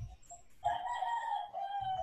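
A single long, high animal call with several overtones, starting about half a second in and held for about a second and a half, its pitch falling slightly toward the end.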